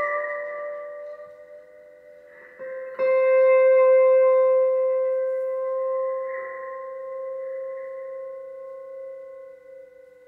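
Pedal steel guitar: a held chord fades out, then about three seconds in a new note is plucked and rings on long and steady, slowly dying away.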